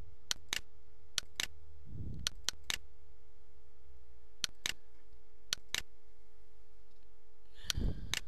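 A computer mouse clicking, mostly in quick pairs, about six times over the few seconds, over a steady faint hum.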